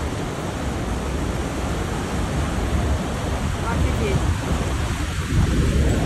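Niagara Falls: the river's rapids pouring over the brink, a steady rush of water with a heavy low rumble.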